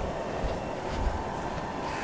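Steady outdoor urban background noise: a low rumble with a faint hum that fades early on.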